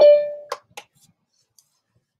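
Video-call notification chime: a single short ding that rings and fades over about half a second, signalling that someone has entered the meeting's waiting room. A few faint clicks follow.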